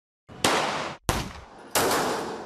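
Handgun shots on a firing range: three sharp reports about two-thirds of a second apart, each trailing off in a short ring.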